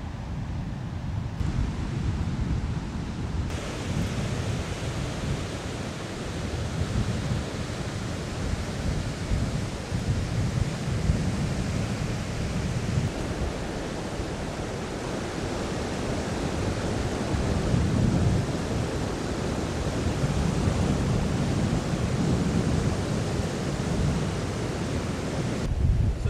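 Wind buffeting the camera microphone in uneven low gusts over a steady rushing noise.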